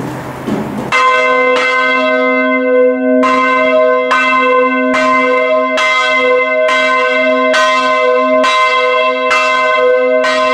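Swinging bronze church bells, cast by Eschmann in 1967, start striking about a second in after a moment of mechanical noise. The clappers then strike about twice a second, each stroke ringing on over a lasting low hum.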